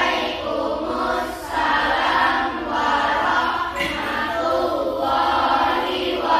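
A class of schoolchildren chanting together in unison, phrase after phrase, in a sing-song group reply to the teacher's opening greeting.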